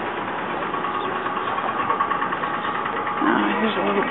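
Steady street noise with a vehicle engine running, a faint even hum. A man's voice comes in near the end.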